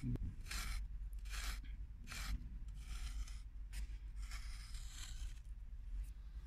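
Wooden stick scraping lines into dry, sandy soil: a series of about seven short scraping strokes, roughly one a second, as the outline of a bed is drawn.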